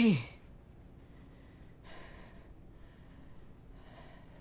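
A woman breathing heavily, with faint sighs or breaths about two and three seconds in, after the tail of a spoken line at the very start.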